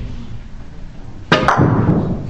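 Russian pyramid billiards shot: the cue tip strikes the red cue ball with a sharp click just over a second in, a second click follows a moment later, and then the heavy ball rolls across the cloth with a low rumble.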